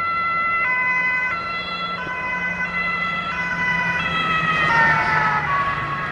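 Dutch ambulance two-tone siren, switching between a high and a low note about every two-thirds of a second over the low hum of the vehicle. About four and a half seconds in, its pitch falls as the ambulance drives past.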